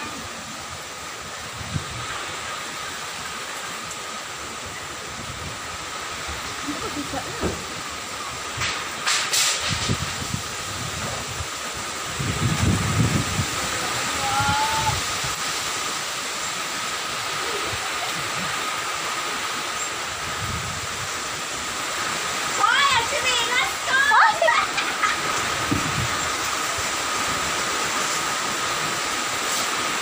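Strong storm wind with heavy rain: a steady rushing noise that builds in gusts. Gusts thump on the microphone about twelve seconds in.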